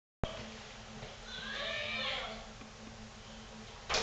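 A person's high-pitched, wavering voice for about a second, then a short sharp noise near the end.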